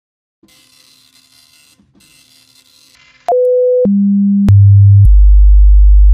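Synthesized electronic tones of an intro sting. After a few seconds of faint hiss with a low steady hum, a loud pure tone steps down in pitch four times, from a mid beep to a deep low drone, the last two steps louder.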